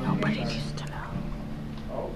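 A person whispering quietly, mostly in the first second.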